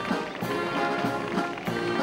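Military band playing march music outdoors, brass carrying the tune over a steady drum beat.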